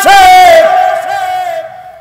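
A man's amplified voice drawing out a long chanted vowel at the end of a phrase, in the sing-song delivery of a Bengali waz sermon. The note is held steady for about a second and a half, then fades out near the end.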